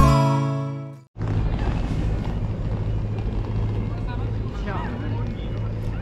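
Background music with a whistled tune fades out in the first second. It gives way to outdoor town noise: a steady low engine hum and faint voices of people nearby.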